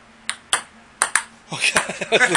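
Table-tennis ball clicking against paddles and the table in a short rally: four sharp hits in the first second or so. A voice follows near the end.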